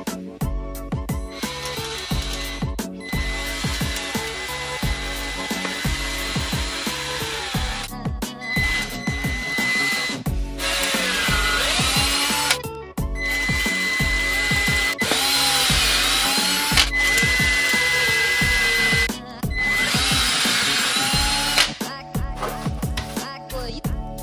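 Milwaukee cordless drill boring pilot holes into a wooden block, running in several spells of a few seconds with a steady whine and short stops between. Background music with a steady beat plays under it throughout.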